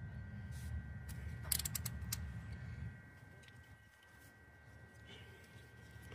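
Quiet background with a low rumble that fades about three seconds in, and a quick run of faint clicks about a second and a half in.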